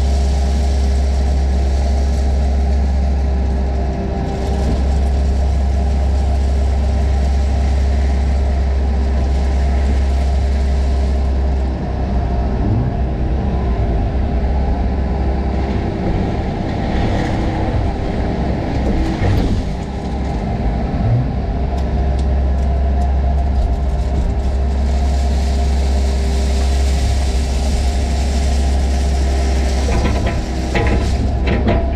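Komatsu PC78 excavator's diesel engine running steadily under hydraulic load, heard from inside the cab. There is some uneven scraping and clatter of crushed stone partway through and again near the end as the bucket loads and dumps.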